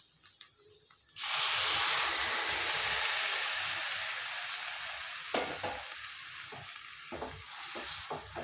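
Water poured into a hot pan of frying mutton and onions sets off a loud, sudden sizzle about a second in, which slowly dies down over several seconds. Near the end a wooden spatula knocks and scrapes as the pan is stirred.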